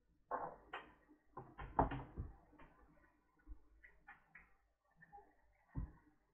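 Light handling noises of cables and small objects on a workbench: a series of knocks and clicks, busiest in the first two seconds, with a few scattered ones later and another knock near the end.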